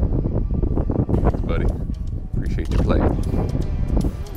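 Heavy wind rumble on the microphone outdoors, with a few brief, indistinct voice sounds.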